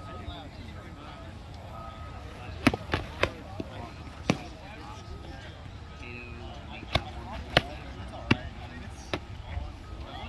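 Padded LARP swords striking round shields in a sparring bout: a quick run of about five sharp thuds a few seconds in, then four more single thuds, evenly spaced, in the second half.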